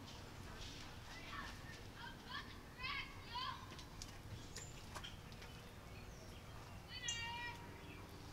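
Faint outdoor background with scattered distant high-pitched calls, and one longer wavering call about seven seconds in.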